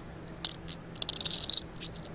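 Faint clicks over low room tone and a steady hum: a single click about half a second in, then a quick run of small clicks around one to one and a half seconds.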